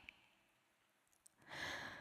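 Near silence, then about a second and a half in, a woman's in-breath, close on a headset microphone, drawn just before she speaks.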